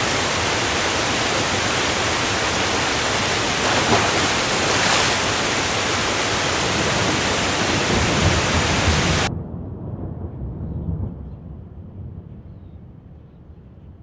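Intro sound effect of loud rushing water, a steady hiss that lasts about nine seconds. It then cuts off suddenly into a lower rumble that fades away.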